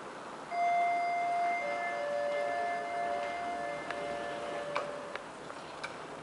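Elevator arrival chime: a two-note ding-dong, the higher note about half a second in and a lower note about a second later, both ringing on and slowly fading. A few faint clicks follow near the end.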